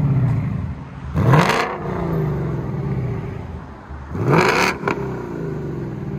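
Ford Mustang GT's V8 blipped twice through an H-pipe that replaces the resonator, exhaling through the factory active-exhaust mufflers. The revs climb sharply about a second in and again about four seconds in, each falling back to idle.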